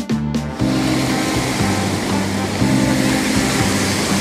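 Ocean surf washing onto a sandy beach, a steady rushing that comes in about half a second in, under background music with sustained low chords.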